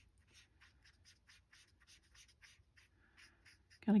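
Faint scratching of a Stampin' Blends alcohol marker's felt tip on cardstock in short, quick colouring strokes, about five a second.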